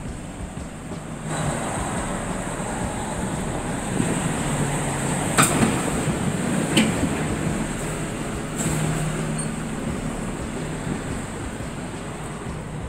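Street traffic noise, rising about a second in, with two sharp clicks about a second and a half apart in the middle.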